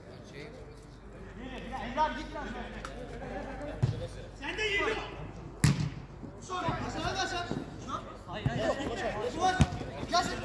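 A football kicked on an artificial-turf pitch: three sharp thuds of the ball, the loudest about halfway through, amid players' shouts.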